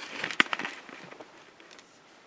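Handling noise from a handheld camera being moved: a brief rustle with one sharp click about half a second in, then fading to faint cabin room tone.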